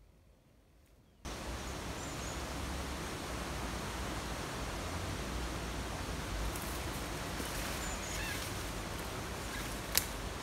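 Steady outdoor background noise with a low rumble like wind on the microphone, starting abruptly about a second in, with a few faint bird chirps and one sharp click near the end.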